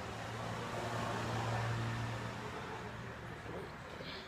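A low, steady machine hum with a clear low pitch. It swells about half a second in and eases off after about two and a half seconds.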